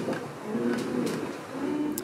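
Wooden tall ship's timbers creaking in short low groans, about one a second, with a few faint knocks.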